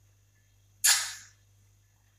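A child's single sharp, hissing mouth sound as she puts a piece of lime to her mouth and tastes it, starting suddenly about a second in and fading within half a second.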